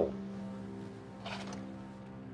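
Low, steady sustained drone of background film score, with one brief soft sound about a second and a quarter in.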